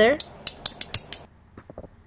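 Two black plastic spoons clicked together, bowl against bowl, in a quick run of sharp clicks that stops a little past a second in. A few faint ticks follow.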